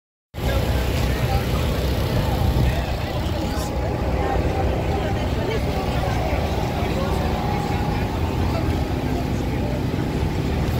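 A steady, low engine hum under the chatter of a crowd of voices.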